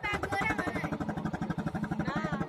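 Boat engine chugging in a fast, steady rhythm, with voices over it.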